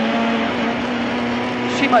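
Lada 21074 rally car's four-cylinder engine heard from inside the cabin, running hard at steady revs on a straight, one held note throughout.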